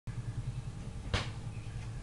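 Low steady hum of a recording setup, with one sharp click about a second in.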